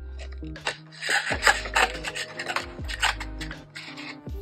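Background music with held low notes, overlaid by brief rubbing and rustling handling noises, the strongest about a second in.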